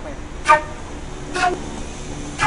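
Transverse flute blown in two short, separate notes of different pitch, about a second apart.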